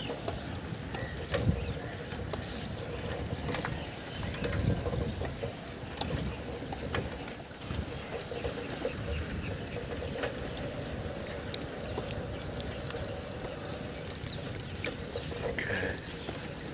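Road and wind rumble from riding alongside a bicycle held in a wheelie, with scattered knocks and a faint steady hum. About a dozen short high squeaks or chirps come and go, most of them in the middle seconds.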